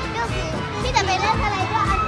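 Children's voices talking and calling out, with a high-pitched call about halfway through, over background music.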